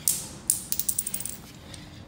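Metal door latch and handle of a front-loading commercial washer being worked by hand: a sharp click, a second loud click about half a second later, then a quick run of fading ticks.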